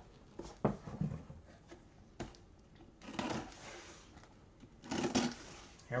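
A cardboard box being picked up and handled on a wooden tabletop: a few light knocks and two short rustling scrapes, one about three seconds in and one near the end.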